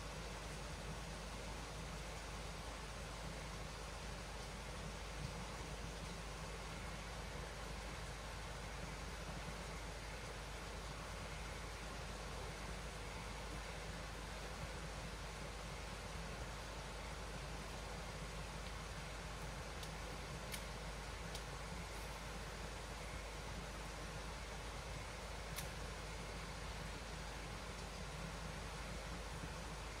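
Steady hiss of running water from a small stream, with a few faint clicks in the second half.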